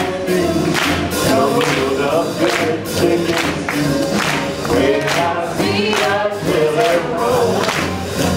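Swing music from a live band, with a melody line over a steady beat about twice a second.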